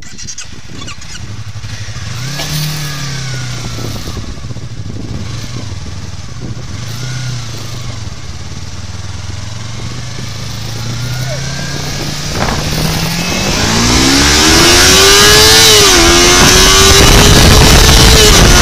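Yamaha YZF-R25 parallel-twin engine heard from the rider's seat, pulling away gently at first, then accelerating hard through the gears. The revs climb steeply and drop with an upshift about sixteen seconds in, while wind noise builds until it is loud near the end.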